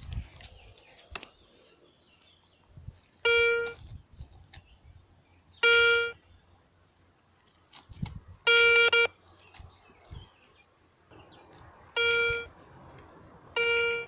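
Garrett 150 metal detector giving five short beeps of the same pitch, each about half a second, as its coil is swept over a freshly dug hole: the signal of a metal target still in the ground.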